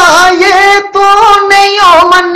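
A single unaccompanied voice singing a Punjabi folk mahiya, holding long ornamented notes with a wavering melodic line.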